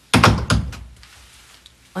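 A door being shut: two heavy thuds about a third of a second apart, each dying away quickly.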